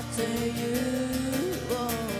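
Female vocals holding one long sung note without clear words, bending up in pitch near the end, over acoustic guitar accompaniment.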